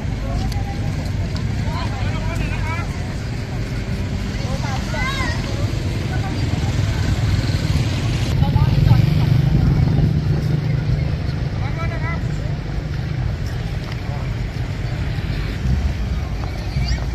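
Outdoor street noise: a steady low rumble with scattered, indistinct voices of people walking in a procession. The rumble grows louder for a couple of seconds around the middle.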